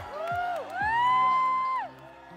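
Young girls singing over backing music: a short phrase, then a long rising note held for about a second that breaks off near the end.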